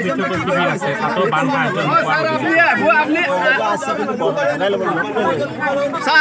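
Several people talking at once, voices overlapping in a loud, steady chatter.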